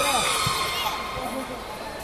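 Background chatter of many voices echoing in a large gymnastics hall.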